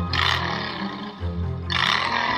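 Harsh buzzer sound effects going off twice, about a second and a half apart, each falling in pitch. A looping backing music track runs underneath.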